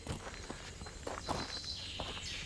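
Footsteps of people walking together: a run of soft, irregular steps.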